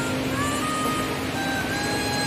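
A fast river rushing over rocks, heard as a steady roar of water, with background music of long held notes laid over it.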